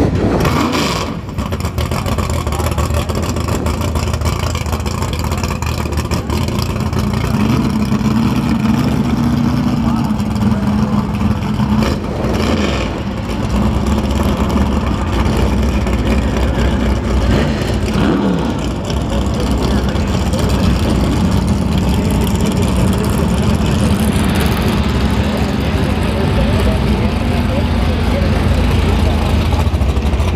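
Classic Mopar drag cars' engines idling with a steady low rumble, swelling slightly now and then as a car is blipped or rolls past.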